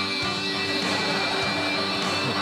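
Backing music with a strummed guitar, playing on between the sung lines of a comic song.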